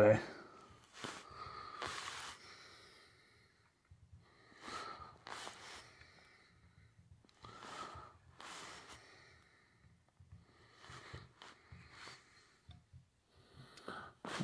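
A person breathing through the nose close to the microphone, about four soft in-and-out breaths, one every three seconds or so.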